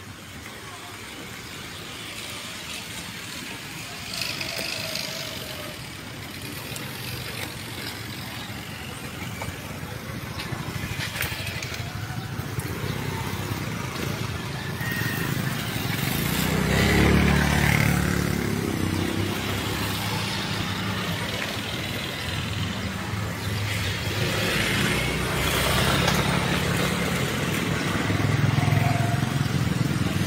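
Motorcycles and other road traffic passing through a street junction: quiet at first, growing louder, with the loudest pass about halfway through and engine noise staying up after it.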